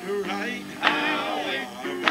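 A man singing into a handheld microphone, with long held, sliding notes and short breaks between phrases.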